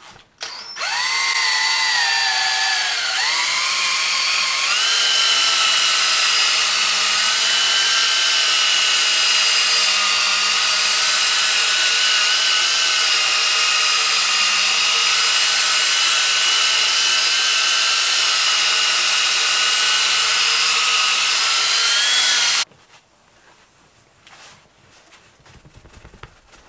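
Cordless drill spinning a foam buffing pad against fiberglass: a steady motor whine that starts under a second in, sags in pitch over the first few seconds as the pad is pressed on, then settles higher and holds before cutting off suddenly a few seconds before the end.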